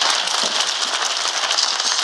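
A dense, rapid patter of clicks from many press photographers' camera shutters and film advances going off at once.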